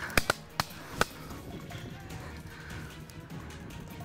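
Four sharp shotgun reports in about the first second, fired at a flushed bird, then low background music.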